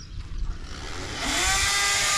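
A power tool's motor spinning up: a whine that rises in pitch about a second in and then holds steady and high, with a hiss over it, getting louder.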